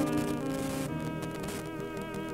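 Band music with held notes over a low bass note; about a second in, a sustained wavering tone with vibrato enters over the band.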